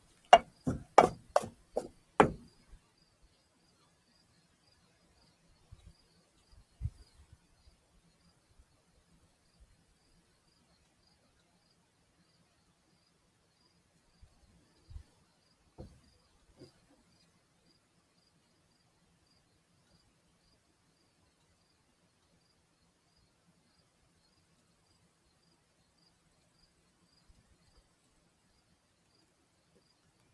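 Plastic cups knocked about and set down on a plastic-covered table: a quick run of sharp knocks in the first two seconds, then a few faint knocks. A faint, high insect chirp repeats evenly throughout.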